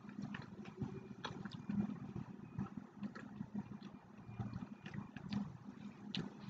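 Quiet mouth sounds of eating a raw oyster from its shell: slurping and chewing, with scattered small clicks.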